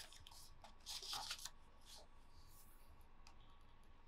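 The page of a hardcover picture book being turned by hand: a brief paper rustle about a second in, with a few faint clicks of handling around it, otherwise near silence.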